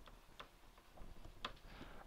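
A few faint, irregular clicks of a stylus tapping on a pen tablet during handwriting, over near silence.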